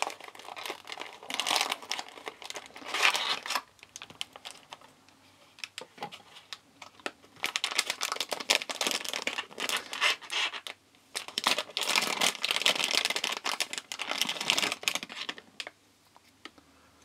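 Packaging being handled during an unboxing: cardboard box handling, then a plastic anti-static bag crinkling in irregular bursts as a small circuit board is taken out of it. It pauses a few seconds in and is busiest in the second half.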